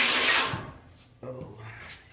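A sudden hard bump against the car, a sharp noisy hit that fades out within about half a second.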